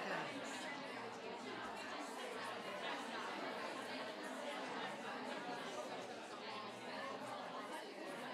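Many people talking at once in small-group discussions: a steady hubbub of overlapping conversation with no single voice standing out.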